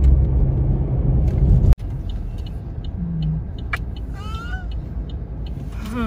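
Low rumble of road and engine noise inside a moving car, which cuts off abruptly about two seconds in, leaving a quieter steady cabin hum. About four seconds in a baby gives a short high-pitched vocal sound that rises and falls.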